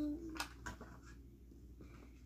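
A few light clicks and faint rustling as a backpack is handled and opened.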